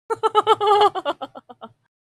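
A woman giggling: a run of quick laughs, strongest at first, that trail off into shorter, fainter ones and stop a little before the end.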